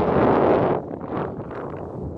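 Wind buffeting the microphone on an exposed hilltop, a loud rush that drops off sharply a little under a second in to a weaker, gusty rush.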